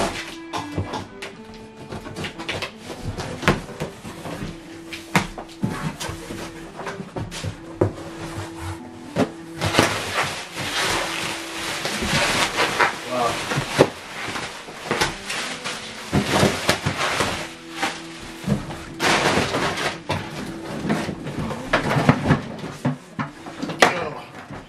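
Background music with held notes over the handling of a cardboard box: packing tape being slit, cardboard flaps knocking, and long stretches of plastic wrapping rustling, loudest from about ten to thirteen seconds in.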